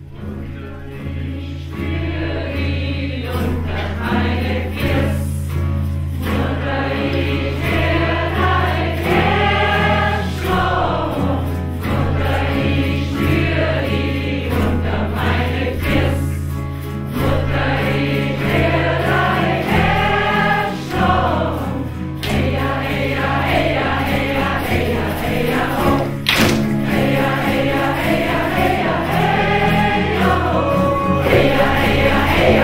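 A mixed group of voices singing a Native American chant together, over the steady beat of a large hand-held rawhide frame drum.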